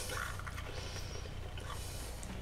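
Quiet room tone with a steady low hum, and a faint brief sound just after the start.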